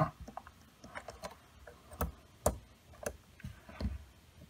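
Irregular small clicks and taps from a metal drawing compass being set to 4 cm against a plastic ruler, its legs and adjusting screw moved by hand, with two sharper clicks around the middle.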